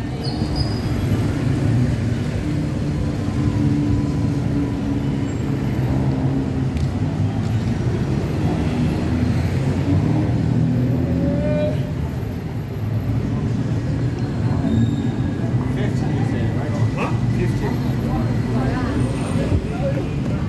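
City street ambience: a steady low rumble of road traffic, with indistinct voices of passers-by.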